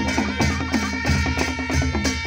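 Nepali panche baja band playing: dholaki and damaha drums beating a quick, steady rhythm of about four strokes a second under held wind-instrument notes.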